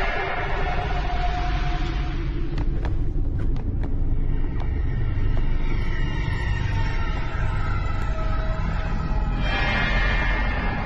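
Eerie horror soundtrack music: a low rumbling drone under thin sustained high tones, with a few faint ticks about three seconds in.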